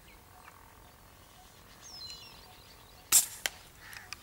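A single gun shot fired at doves just after three seconds in: one sharp crack, followed a moment later by a second, shorter crack. A few faint high bird chirps come about two seconds in.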